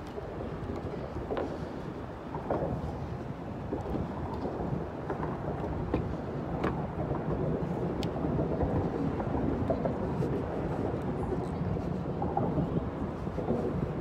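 Wind buffeting a phone's microphone, a steady low rumble with a few faint scattered clicks.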